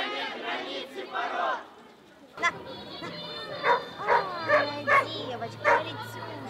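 Voices of a crowd for the first second or so, then a dog barking: about five sharp barks, spaced unevenly, over the next three seconds.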